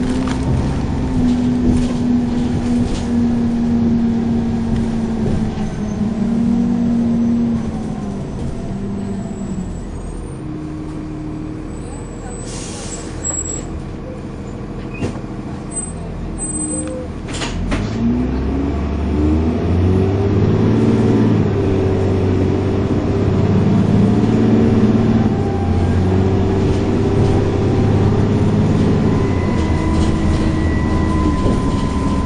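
Dennis Trident 2 double-decker bus's diesel engine heard from inside the bus, running under load, then dropping to a quieter, lower running in the middle with a short hiss of air. From a little past halfway it pulls away hard, the engine note rising and falling through the gear changes.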